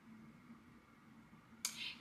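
Near silence: room tone in a small room, broken near the end by a short sudden noise as a woman is about to speak.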